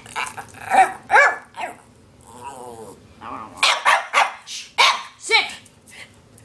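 Norwich Terrier barking and 'talking': a string of short, loud yelps and wavering, pitch-bending vocal calls, a dog demanding to be fed.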